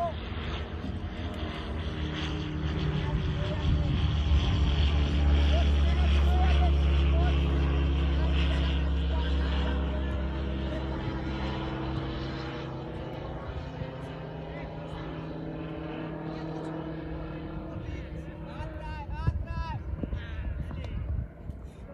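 A passing engine's steady drone that swells over the first few seconds, is loudest about five to eight seconds in, then fades away.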